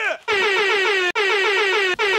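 DJ air-horn sound effect: a pitched horn with a fast flutter, sounding as one short blast and then, after a brief break about a second in, a second longer blast.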